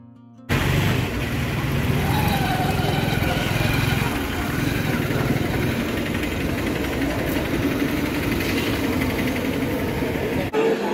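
Busy street noise: people's voices mixed with motor vehicle engines running, with a strong low rumble. It cuts in abruptly about half a second in, after a moment of faint music.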